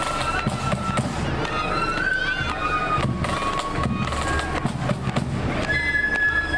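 Marching flute band playing: the flutes carry a tune of held, stepping notes over rapid snare drum rolls and a steady bass drum beat.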